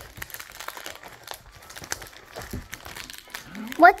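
A hockey card pack's wrapper being torn open and crinkled by hand: a quick run of small crackles and rustles. A child's voice comes in near the end.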